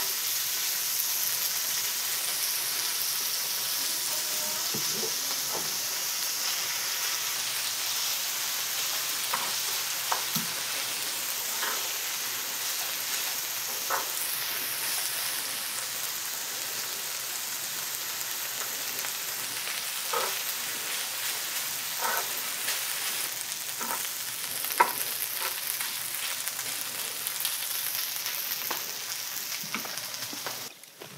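Chopped pork belly, kimchi and rice sizzling steadily on a hot tabletop grill plate as they are stir-fried into fried rice, with now and then a tap or scrape of the utensils on the plate.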